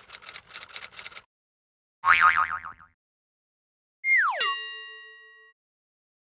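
Title-sequence sound effects: a quick run of typewriter-like key clicks for about the first second, then a short warbling boing about two seconds in, then a steeply falling swoop that lands on a ringing chime about four seconds in and fades out.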